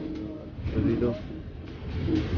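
A person's low voice in short pitched fragments about a second in, over a steady low rumble.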